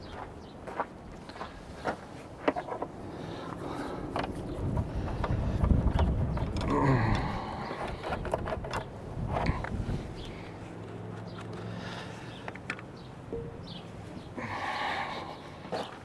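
Footsteps on gravel and scattered clicks and knocks as the side filter covers on a skid steer's cab are opened and the cab air filters pulled out, with a low rumble swelling around the middle.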